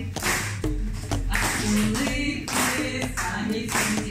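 Voices singing a song together while hands clap along in a steady beat, about one clap every two-thirds of a second.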